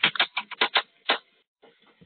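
Typing on a computer keyboard: a quick run of about eight key clicks that stops a little after a second in.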